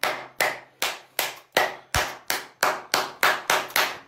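One person clapping hands in a steady rhythm, about a dozen sharp claps that quicken slightly toward the end.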